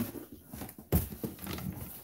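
Handling noise of a box being grabbed and pulled across a table, with scraping and one sharp knock about a second in.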